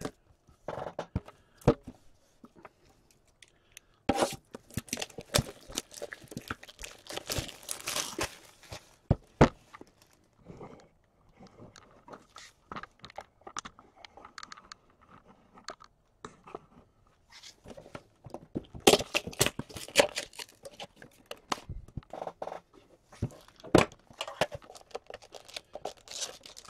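Packaging on a hockey-card tin being torn and crinkled open, with clicks and knocks as the metal tin and its lid are handled. The tearing comes in two busy stretches, about four seconds in and again near nineteen seconds.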